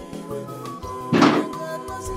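A single heavy thunk of a metal front door being opened, about a second in, over steady background music.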